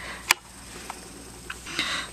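A sharp click about a third of a second in, then two faint ticks, from hands handling the opened netbook's plastic and circuit-board parts.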